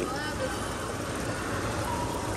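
Steady rushing of water from an artificial rock fountain, with faint background voices.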